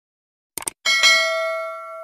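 Subscribe-button sound effect: a quick double mouse click, then a bell ding just under a second in that rings on and slowly fades.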